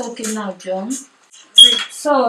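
Voices talking in a small room, the words not made out, with a short sharp sound that carries a brief high tone, the loudest moment, about one and a half seconds in.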